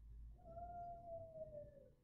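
A faint, long drawn-out cry from elsewhere in the house, held on one pitch for over a second and dropping at the end.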